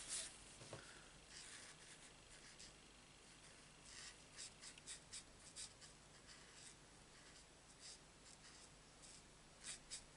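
Faint scratching of a marker nib on cardstock as flowers are coloured in, in short strokes, with a quick run of them about four to six seconds in and a couple more near the end.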